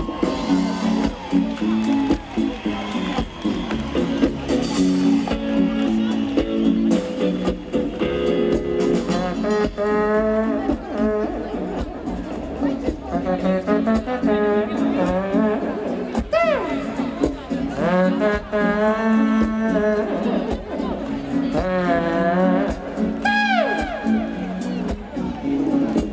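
A trumpet improvises over a live band's steady backing. From about ten seconds in, it plays melodic phrases with bending notes and falling glides.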